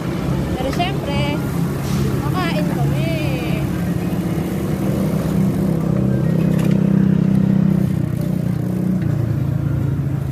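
Motor vehicle engine running steadily close by over traffic noise, a low hum that grows a little louder about six to eight seconds in.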